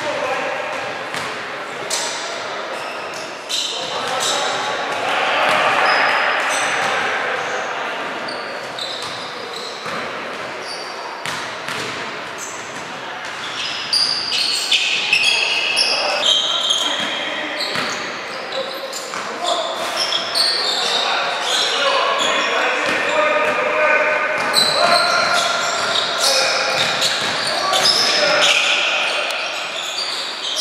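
Basketball game sounds in a large hall with reverberation: the ball bouncing on the hardwood court, players' indistinct shouts and short high squeaks, all busier in the second half.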